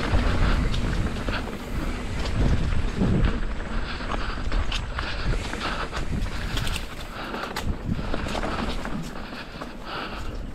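Mountain bike rolling fast down a dirt singletrack: knobby tyres running over dirt, leaves and roots, with many short knocks and rattles from the bike over the bumps.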